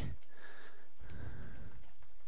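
Steady low background hiss of room tone, with a faint breath in the first second.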